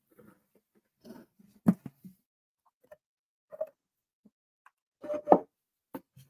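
A scattering of short knocks and light scrapes as craft panels are handled and slid about on a work table, with two sharper knocks, one near two seconds in and one near the end.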